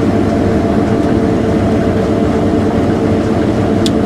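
New Holland CR8.80 combine harvester running under load while threshing, a steady engine and machinery drone heard inside the cab. A short tick comes just before the end.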